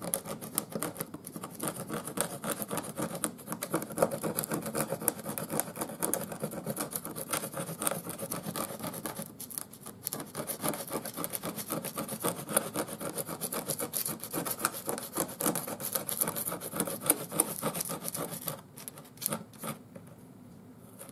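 Metal putty knife scraping glued-down roadway material off a model railroad layout in rapid, rasping strokes, the glue softened with water and alcohol. There is a short lull about halfway through, and the scraping eases off near the end.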